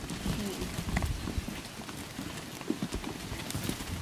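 A herd of goats crowding and jostling, hooves shuffling and clattering on stony dirt in many small irregular knocks.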